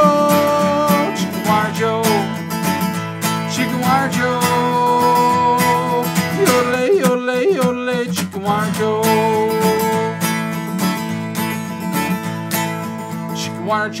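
A man sings a country-style children's song, accompanying himself on a strummed acoustic guitar, with long held sung notes. About halfway through, his voice breaks into a quick, wavering yodel.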